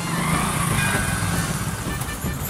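Motorcycle passing close by with its engine running, loudest about a third of a second in and then easing off as it goes past.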